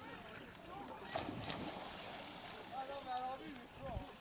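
A diver hitting the pool water about a second in, a sharp splash followed by a brief wash of water noise. Voices call out near the end.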